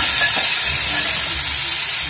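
Sliced mushrooms sautéing in a frying pan, a steady loud sizzling hiss.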